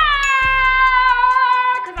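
A woman's long, high-pitched shout through cupped hands, dropping slightly at the start and then held for nearly two seconds, over background music with a steady beat.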